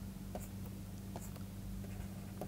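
Faint scratching and light ticks of a stylus writing on a pen tablet, over a steady low hum.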